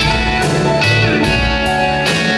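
Live band playing an instrumental passage of a slow R&B ballad between sung lines: electric guitar over bass, drums and keyboard, with regular cymbal strokes keeping the beat.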